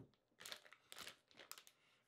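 Thin plastic packaging bag crinkling faintly in a few short crackles as it is opened by hand.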